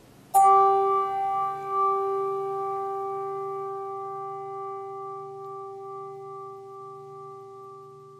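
A bell struck once and left to ring, its clear tone fading slowly over several seconds: a memorial toll for one of the dead being remembered.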